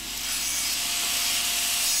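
A handheld electric power tool working the surface of a weathered reclaimed board, making a steady abrasive hiss with a faint motor whine underneath.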